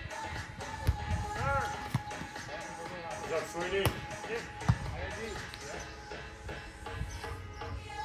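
Beach volleyball rally: a volleyball is struck by hand, giving sharp slaps about four times in the first five seconds. The loudest slap comes just before four seconds in, as a player attacks the ball at the net. Players' calls and background music are heard along with the hits.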